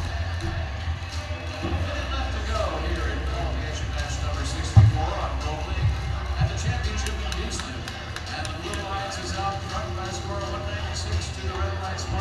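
Arena PA playing music with a heavy steady bass under an announcer's reverberant voice, with crowd noise and scattered clicks. One sharp thump stands out about five seconds in.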